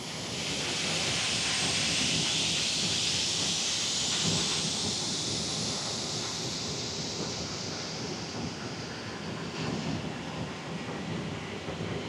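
CFM56-5B turbofan being motored by its air starter for a FADEC ground test, heard from inside the cockpit. A rush of air comes up at once and slowly eases, under a faint whine that climbs steadily in pitch as the rotor spools up.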